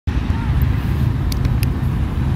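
Steady low rumble of road traffic by a busy road, with faint voices and a few brief sharp high sounds about one and a half seconds in.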